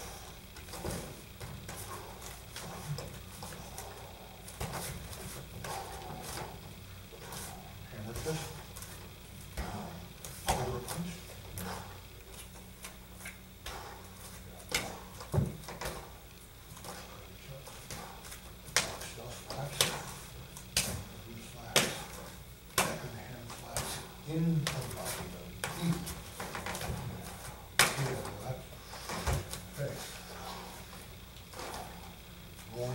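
Irregular sharp slaps and taps of bare hands striking and parrying bodies and arms during light sparring, with bare feet shuffling on foam mats; the slaps come thicker and louder in the second half.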